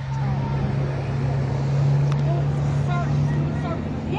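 A car engine running with a steady low drone that swells slightly about halfway through, with faint voices in the background.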